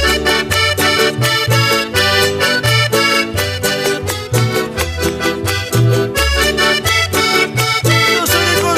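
Piano accordion leading a lively instrumental passage of Bolivian Santa Vera Cruz copla music, over strummed charango and guitar, with a steady quick beat.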